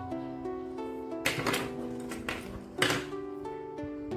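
Gentle background music of plucked-string notes. Two short rustling bursts come through it, about a second in and near three seconds.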